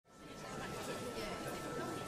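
Murmur of a crowd chattering, fading in quickly at the start, with a faint steady tone underneath.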